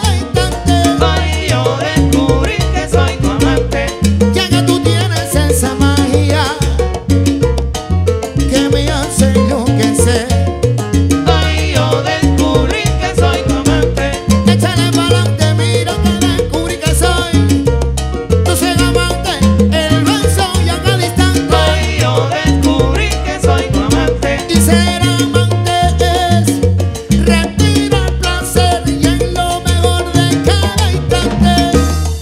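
Live salsa band playing with a steady, driving beat: horns, timbales and congas, bass and piano together.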